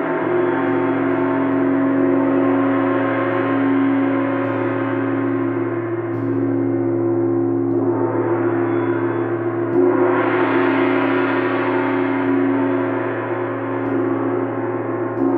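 Large Chau gong kept ringing with two soft mallets: a sustained wash of many overlapping overtones over a steady low hum. It swells louder and brighter about ten seconds in.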